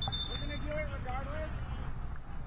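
A man's voice calling out on the pitch, over a steady low rumble of outdoor field noise.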